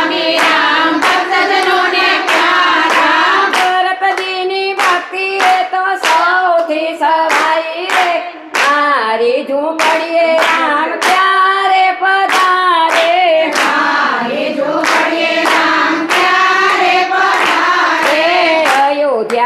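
A group of women singing a Gujarati devotional bhajan together, with steady unison hand clapping about twice a second.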